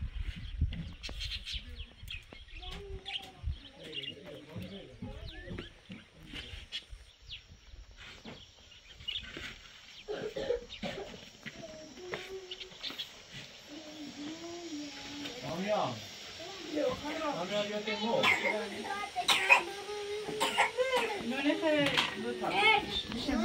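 People talking in a language the recogniser did not write down, getting louder and busier in the second half.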